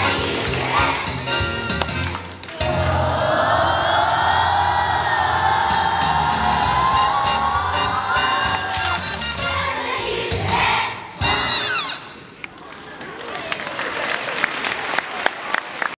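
Children's choir singing over a backing track to the end of a song, holding one long final note that lifts in pitch near its end, with a last short hit about eleven seconds in. Audience applause and cheering follow.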